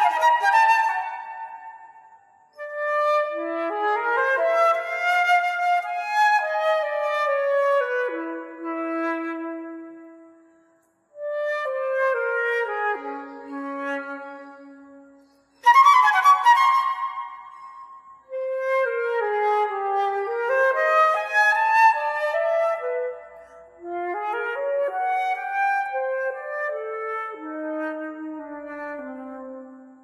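Unaccompanied silver concert flute playing a classical solo in phrases of a few seconds with short breaths between them. Sharp accented notes open the passage and again about halfway, followed by runs that fall into the flute's low register.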